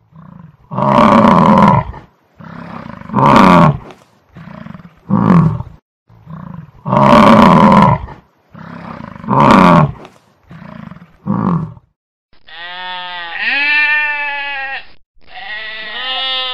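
Water buffalo bellowing: a series of deep, rough calls, the same three calls heard twice over. Near the end a goat bleats twice, with a long wavering call.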